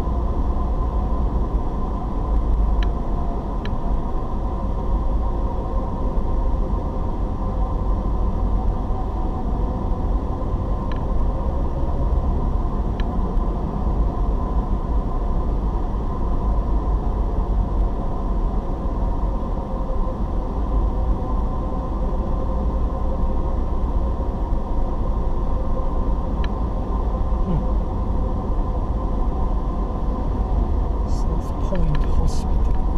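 Steady low rumble of a car driving, heard from inside the cabin: engine and road noise with a faint steady hum. A few faint clicks sound now and then.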